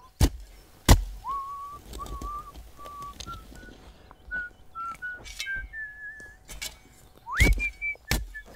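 A man whistling a slow tune, note by note, rising to a higher glide near the end. A few sharp thuds of a shovel striking the ground, two close to the start and one near the end.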